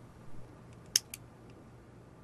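A few small clicks as a hinged gift box is handled and its lid opened. The sharpest click comes about a second in.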